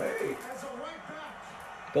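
Soccer match broadcast playing on a television: a commentator's voice over crowd noise.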